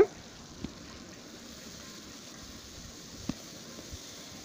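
Faint, steady hiss of shallots frying in oil in an aluminium kadai, with two small knocks, one about half a second in and one near three seconds.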